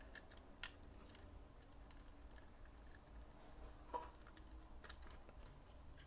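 A few faint, scattered clicks of an S.H. Figuarts action figure and its toy motorcycle being handled as the figure is seated and posed on the bike, over near-silent room tone.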